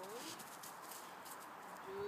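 A dog's paws running over grass and dry fallen leaves: a soft, irregular rustling of footfalls, with a brief voice at the start and end.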